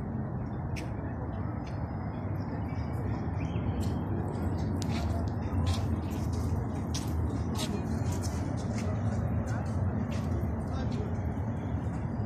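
Steady outdoor city-square ambience: a continuous low background noise with indistinct voices of passers-by and traffic.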